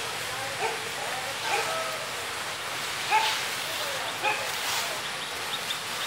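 Short, scattered animal calls, roughly one every second or so, over a steady outdoor hiss.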